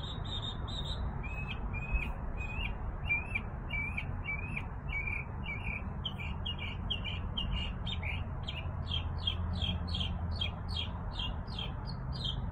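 A backyard songbird singing a long series of short, repeated chirped notes, about three a second, quickening slightly in the second half. Underneath is a steady low background rumble.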